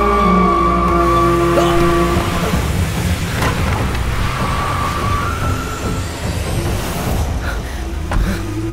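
Film soundtrack: held music tones for about the first two seconds, then the noise of a vehicle driving off fast over paving.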